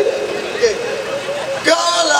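A man's voice through the street PA, over a steady background hum of traffic and crowd; near the end a live band of drums, bass and amplified acoustic guitar comes in with a sharp drum hit.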